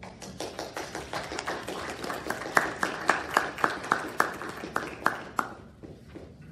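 Scattered applause from a small congregation, a handful of people clapping unevenly, dying away about five and a half seconds in.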